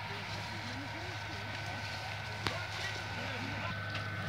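Faint, distant voices of people talking over a steady low hum, with a single sharp click about two and a half seconds in.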